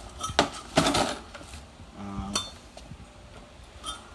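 Small hard objects clinking and knocking together as items are handled and rummaged through, with a few sharp knocks in the first second and a half, then quieter.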